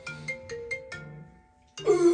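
Smartphone ringtone playing a melody of short, bright pitched notes, pausing about a second and a half in. Near the end a loud groaning voice with falling pitch comes in over it.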